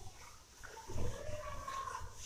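Hand-held duster rubbed back and forth across a whiteboard, squeaking, with the squeaks and rubbing loudest from about a second in.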